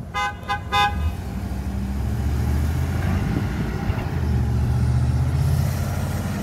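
Three quick horn toots from a UPS package truck, then its engine running with a steady low drone that grows a little louder toward the end.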